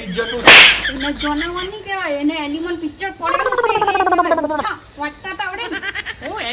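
Spoken dialogue in a voice that slides up and down in pitch, with a short, sharp burst of noise about half a second in.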